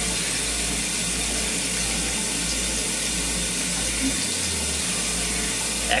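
Shower water running in a steady rush.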